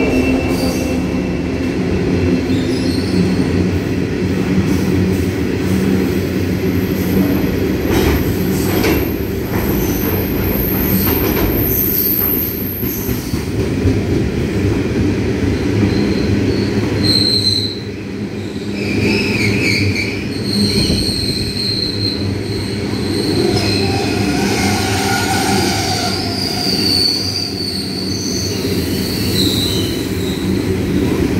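Hopper wagons of a freight train rolling past on the rails just behind its Pacific National TT-class diesel locomotives: a steady rumble of wheels with high wheel squeals coming and going, most of all about a third of the way in and through the second half.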